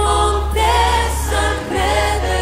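Christian worship song playing: sung vocals over musical accompaniment with a steady low bass underneath, and a brief break between sung phrases about three-quarters of the way through.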